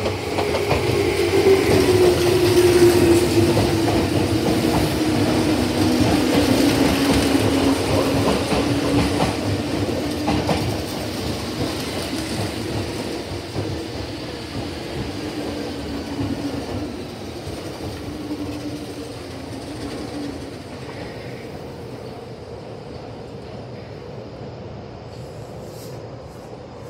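Meitetsu 1200 series Panorama Super electric train pulling into a station: wheels clacking over rail joints, with a low whine that falls slowly in pitch as the train brakes. It is loudest in the first ten seconds, then fades as the train comes almost to a stop; the whine dies out about twenty seconds in.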